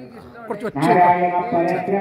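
A man's voice speaking, quieter for the first half-second and then speaking on steadily.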